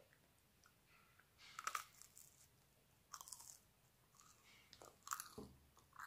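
A person chewing crunchy food, heard as three short crunches spaced about a second and a half to two seconds apart, quiet in between.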